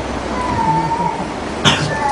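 A man's single short cough near the end, over a steady room hum. Before it comes a brief thin high tone that falls slightly in pitch.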